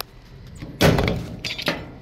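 HVAC blower V-belt being levered off its pulley with a flat screwdriver: one loud slap about a second in, then a few lighter knocks.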